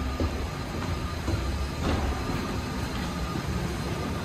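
Steady low rumble with hiss inside an airport jet bridge at a parked airliner, with a single knock about two seconds in.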